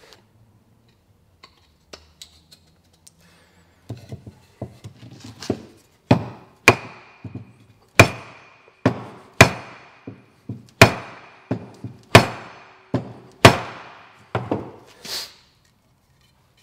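A block of wood struck again and again on the end of a hewing hatchet's wooden handle, driving the steel head down to seat it tightly. The knocks start light and grow into hard, sharp blows about one a second from about six seconds in, several with a short metallic ring.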